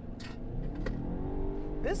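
A 2021 Lincoln Corsair's 2.0-litre turbocharged four-cylinder engine pulling hard under full acceleration in its Excite drive mode, heard from inside the cabin, its note rising steadily over a low road rumble.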